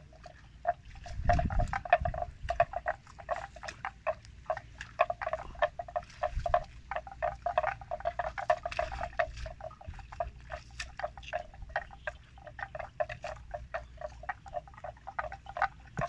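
Frogs calling: a dense chorus of short, rapid, irregular clicks, many a second. A low rumble comes about a second in.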